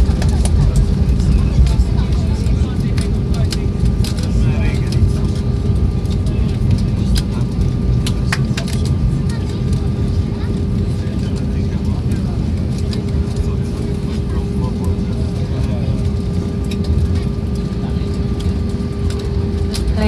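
Airbus A320 cabin noise on the landing rollout: a deep, steady rumble from the engines and wheels on the runway with a constant hum, slowly easing as the aircraft slows. A few light rattles break through.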